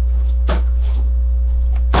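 Steady low electrical mains hum, with a single sharp clack about half a second in and a couple of fainter knocks after it.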